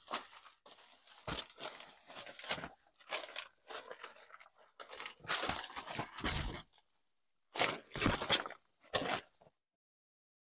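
Deflated nylon air mattress rustling and crinkling as it is unrolled and spread out, in irregular bursts with short pauses.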